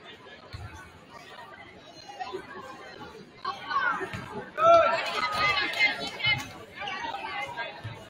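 Spectators' voices chattering in a gymnasium, growing louder from about three and a half seconds in, with voices calling out.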